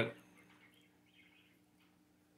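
Near silence: quiet room tone with a faint, steady low hum, after a man's voice trails off at the very start.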